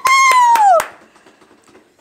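A woman's loud, high-pitched laugh, a single drawn-out squeal that pulses and drops in pitch as it ends, lasting under a second.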